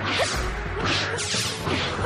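A quick run of about four whooshing swishes, each lasting a fraction of a second, over a steady low hum. These are fight-scene swoosh effects for swinging arms and skirts.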